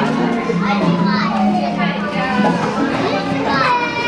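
Young children's voices and chatter in a busy play area, over a steady low hum.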